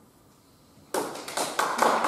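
Audience applause breaking out suddenly about a second in: many hands clapping, growing louder.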